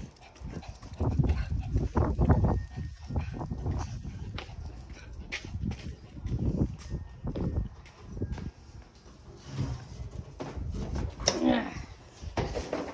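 A dog barking on and off, with a drawn-out, wavering call near the end.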